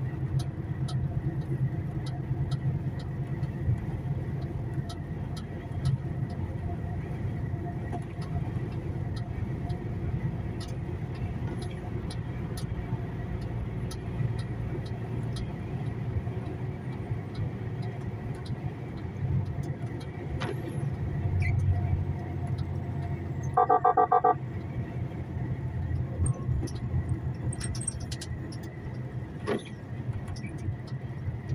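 Steady low engine and road rumble inside a semi-truck cab cruising on a motorway, with faint light clicks scattered through it. About three-quarters of the way in, a short loud pitched tone sounds for under a second.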